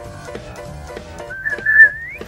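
Faint background music, then about two-thirds of the way in a loud, high whistled note. It holds steady for about half a second and slides upward at the end.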